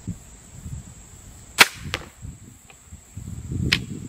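A TenPoint Viper S400 crossbow fires once, a sharp loud snap about a second and a half in, followed a moment later by a fainter knock. Another sharp click comes near the end.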